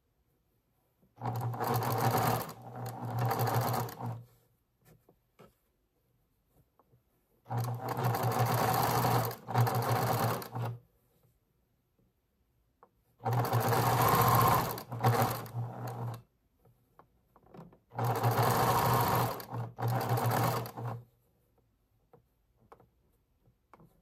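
Domestic electric sewing machine stitching a seam in four runs of about three seconds each, stopping briefly between runs.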